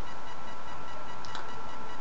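Steady hiss with faint, constant high-pitched tones: the background noise of a low-quality webcam microphone in a pause between words. A faint tick about a second and a quarter in.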